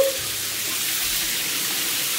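Handheld shower running: a steady hiss of water spraying onto a tiled shower floor.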